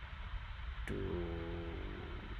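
Steady low hum and hiss from the recording, with a single sharp click about a second in, followed at once by one drawn-out spoken word.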